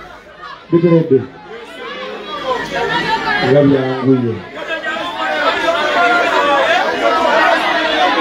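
A man speaking into a microphone amid crowd chatter, the chatter growing busier after about two seconds.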